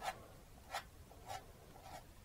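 Palette knife scraping acrylic paint onto a stretched canvas: three short, faint strokes, a little over half a second apart.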